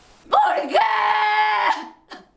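A woman screaming in anguish: one long, high-pitched scream held on a nearly steady pitch for about a second and a half, breaking off just before the end.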